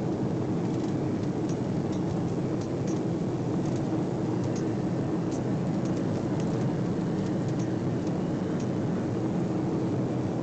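Steady cabin noise of a jet airliner in cruise: a constant low drone of engines and airflow heard from inside the cabin, with a few faint ticks.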